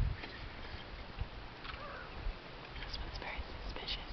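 Hushed whispering voices, too quiet for words to be made out, with a few soft low knocks.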